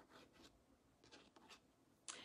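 Near silence with a few faint, short scratchy strokes of a paintbrush working oil paint on porcelain.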